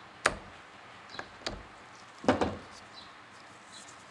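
Sharp clicks and knocks of metal engine parts handled in gloved hands: one loud knock just after the start, two lighter ones around a second and a half in, and the loudest short cluster a little past two seconds.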